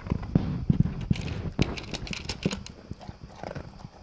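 Golden retriever crunching and chewing dry kibble from a plastic slow feeder bowl: quick, irregular crunches and clicks that ease off in the second half.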